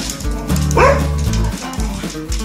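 Background music with a steady beat, over which a dog gives one short yelp, rising and falling in pitch, about three-quarters of a second in, during play with another dog.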